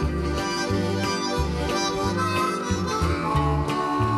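Harmonica solo over a country band, with guitar and a bouncing bass line underneath.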